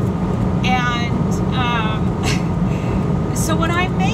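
A woman's voice in a few short phrases over a steady low rumble inside a truck cab, the truck's engine running.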